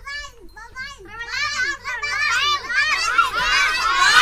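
Many young children's voices at once, talking and calling out together, growing louder and busier toward the end.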